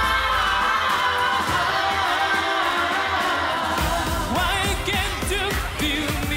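Male pop singer performing live with a band, holding one long high note. About four seconds in a steady drum beat comes in and the voice turns to quick wavering runs.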